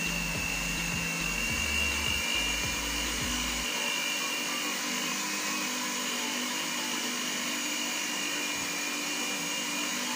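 Electric stand mixer's motor whirring steadily, with a faint high whine, as its twin beaters whip strawberry buttercream in a stainless steel bowl.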